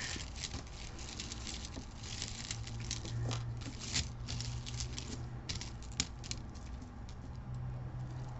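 Light clicks and rattling of small metal jewelry chains being handled, scattered irregularly, with a low steady hum in the middle seconds.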